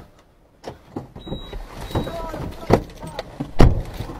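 Thumps and knocks of a physical scuffle inside a car cabin, heard through a dashcam, with the two loudest heavy thumps a little before three seconds in and just before the end. A brief shout or cry comes between them.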